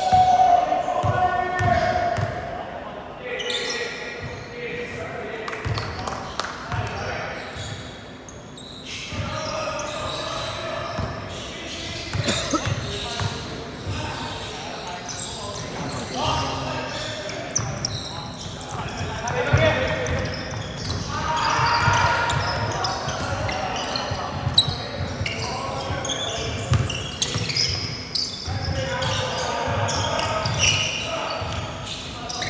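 A basketball bouncing repeatedly on an indoor court under players' and onlookers' voices, which echo in the hall.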